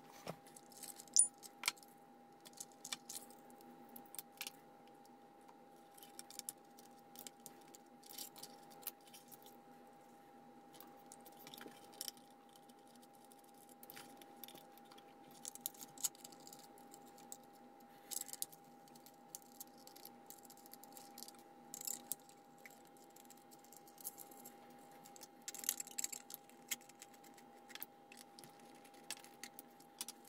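Faint, scattered clicks, clinks and rattles of small plastic parts, screws and tools being handled as a 3D-printed RC car is taken apart to change its motor, over a thin steady hum.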